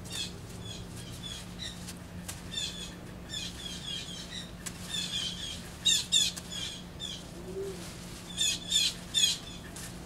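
Sweet potato leaves and vines rustling in short bursts as they are pulled and picked from a trellis: the loudest burst comes about six seconds in, then three quick ones near the end. Birds chirp in the background throughout.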